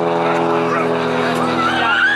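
A motor running steadily, a pitched drone that fades in the second half, while voices start shouting near the end.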